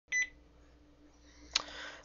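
A short, high electronic beep at the start, then a single click about one and a half seconds in, over a faint hum.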